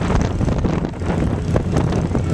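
Pickup truck engines running as they pass, with wind buffeting the microphone.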